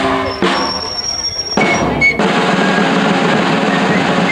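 A small street band playing: two marching drums beating while a fife plays high, piercing notes over them.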